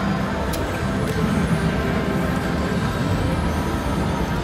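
WMS Vampire's Embrace video slot machine spinning its reels: the game's steady electronic spin sounds over a low, even rumble, with a couple of faint clicks about half a second and a second in.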